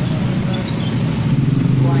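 Roadside traffic noise: motorbikes and cars passing with a steady low engine drone that grows a little louder near the end.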